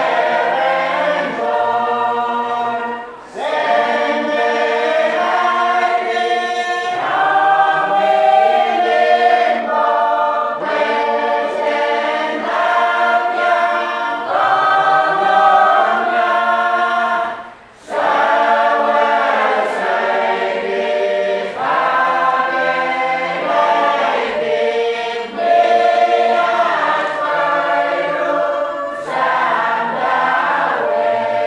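Choir singing a church hymn in many voices, with two short breaks between phrases, about three seconds in and again about eighteen seconds in.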